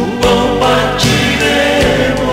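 A man singing a gospel song into a handheld microphone over instrumental backing. His voice slides up at the start and then holds one long note.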